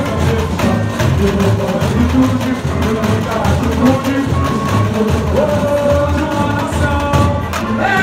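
A samba school bateria drumming a steady samba beat with deep bass-drum pulses, while a sung melody carries over the top.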